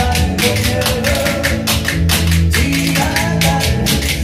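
Wooden spoons clacked together in a quick, even rhythm of about four strokes a second, played in time over loud recorded backing music with bass and melody.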